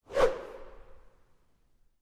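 Whoosh transition sound effect: a single swish that fades out over about a second.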